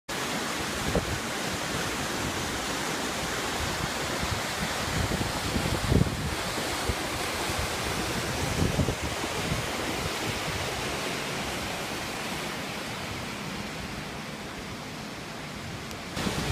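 Small waterfall pouring over rock into a pool, a steady rushing of water, with a few brief low bumps from wind on the microphone.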